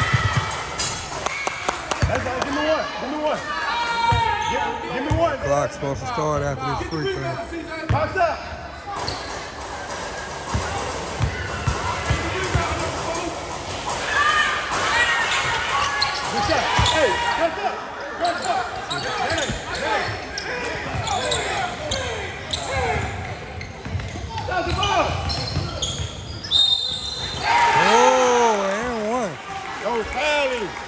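A basketball bouncing on a gym's wooden court at intervals, under voices of spectators and players calling out in the hall. The voices are loudest near the end.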